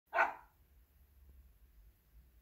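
A small dog barks once, a single short bark at the very start.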